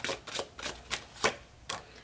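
Tarot cards being handled: a string of irregular sharp clicks and flicks as cards are pulled from the deck and one is laid on the spread.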